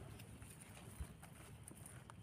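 Faint rustle of a hand brushing leaves and soil aside, with one soft thump about a second in, over a steady high chirring of night insects.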